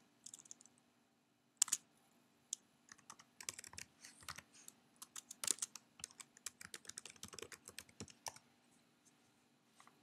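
Faint typing on a computer keyboard: a quick, uneven run of key clicks as a shell command is typed out, starting about a second and a half in and stopping about two seconds before the end.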